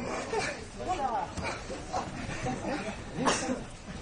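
Voices and shouts echoing around a judo hall, with a few sharp slaps and thuds of bare feet and bodies on the tatami during standing randori; the loudest slap comes a little over three seconds in.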